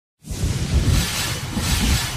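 Intro logo sound effect: a low rumble under a loud hissing rush that starts suddenly just after the start.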